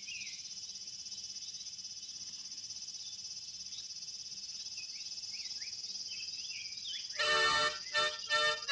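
A steady chorus of insects with scattered short rising chirps. About seven seconds in, a harmonica starts playing loud chords.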